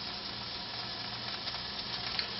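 Hamburger patty frying in oil in a nonstick skillet: a steady, fairly quiet sizzle.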